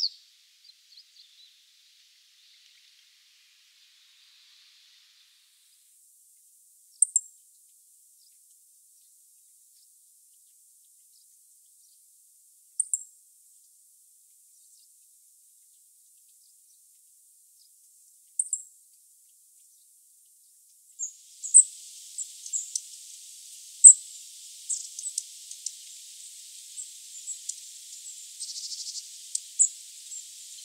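Meadow bunting giving single short, high call notes, three of them about six seconds apart. In the last third, a busier stretch of short high chirps sits over a steady high hiss.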